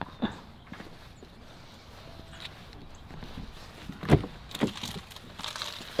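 Footsteps on grass beside a car, light and scattered, then a sharp click-knock about four seconds in and a second, smaller one just after, as the car door is opened.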